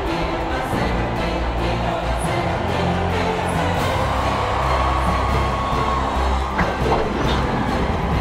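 Orchestral film score with held low notes, over a large crowd cheering.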